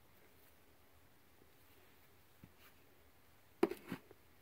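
Quiet room tone with a faint tap about halfway through, then near the end a brief cluster of knocks and rustling: handling noise as the bronze trilobite castings and the cloth they lie on are moved.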